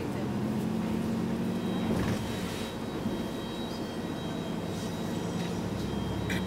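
City bus engine running with a steady low hum, heard from inside the passenger cabin as the bus drives along.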